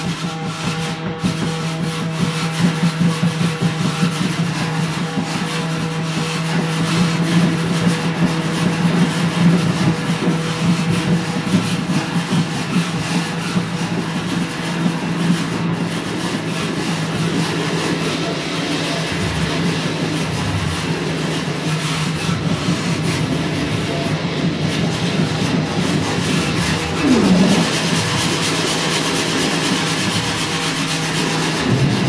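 Improvised experimental noise music: dense rubbing and scraping textures over a steady low hum that fades out about halfway through, with a short swooping pitch glide near the end.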